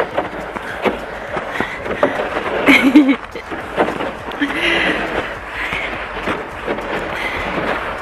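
Footsteps on snow, an irregular run of short scuffs and knocks, with a couple of brief vocal sounds about three seconds in and again around the middle.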